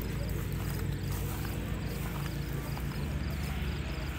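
A car engine idling steadily, a low hum with a rapid, even pulse.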